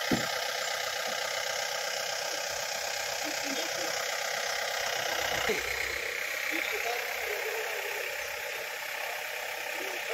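A jeep's engine running as it drives through shallow floodwater on the road, under a steady rushing noise.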